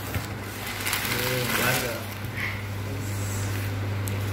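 Crumpled newspaper gift wrapping rustling and tearing as it is pulled off a picture frame, over a steady low hum, with brief faint voices.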